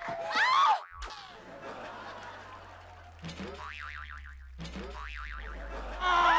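A short, loud shriek, then after a cut a comedy 'boing' sound effect plays twice, each a springy, wobbling twang, over a low hum.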